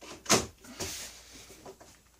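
A hand tool being put down at a wooden workbench: one sharp knock with a short ring about a third of a second in, then a few lighter clicks and a rustle.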